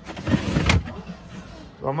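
Refrigerator crisper drawer being pushed shut: a brief plastic sliding rumble that ends in a sharp clack about three-quarters of a second in.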